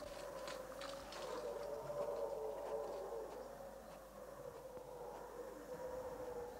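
Faint, distant howler monkeys calling in the jungle canopy: one long, wavering drone that holds through the whole stretch.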